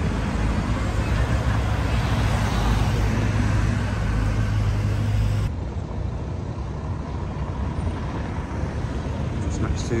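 Street traffic noise: a steady wash of passing road vehicles with a low engine drone underneath. About halfway through it cuts suddenly to quieter traffic.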